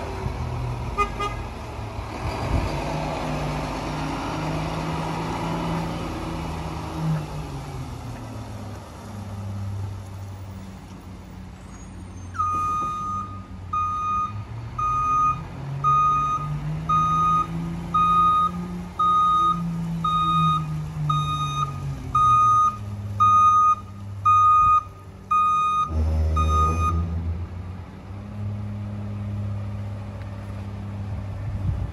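Mack rear-loader garbage truck's diesel engine revving up and easing off as the truck drives off, then revving again as it backs up, with its reversing alarm beeping about once a second from about halfway through. A short, loud burst of noise comes near the end as the truck stops at the carts.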